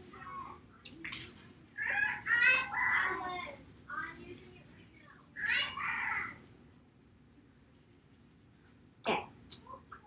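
Soft, indistinct talking in a few short phrases, then about two seconds of near silence and a short noise near the end.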